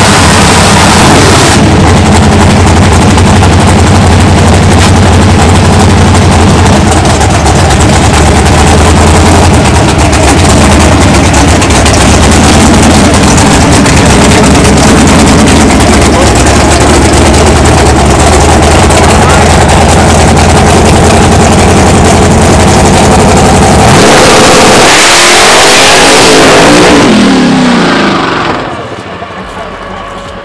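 Drag car engine held at high revs through a long burnout, so loud close up that the recording distorts. About 24 seconds in the car pulls away down the track, its engine note rising then falling, and it fades near the end.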